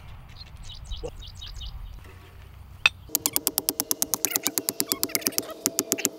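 A hammer tapping rapidly on a metal ground stake, about seven quick strikes a second starting about halfway through, with the metal ringing on at a steady pitch under the strikes.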